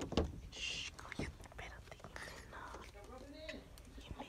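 Quiet whispering voices with a few soft clicks and knocks from the camera being handled.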